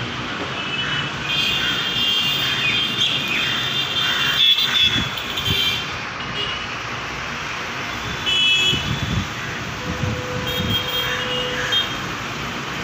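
Steady background traffic noise with short high-pitched toots coming and going, and a sharp knock about four and a half seconds in.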